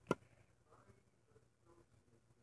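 A single sharp plastic click just after the start as the cap of a small glue bottle is worked open by hand, then only faint handling sounds.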